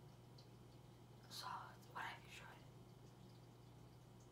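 Faint whispering in two short bursts, a little over a second in and about two seconds in, over a steady low hum.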